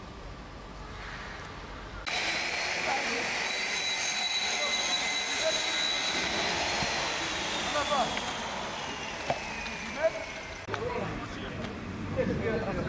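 A steady high engine whine over outdoor background noise, starting abruptly about two seconds in and gliding down in pitch over the last few seconds, with faint voices and two short knocks near the end.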